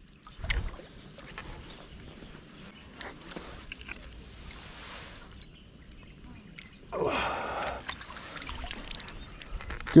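A small bass being drawn in and landed with a landing net: light splashing and sloshing of water. About seven seconds in there is a brief, louder rush of water as the net comes out of the pond.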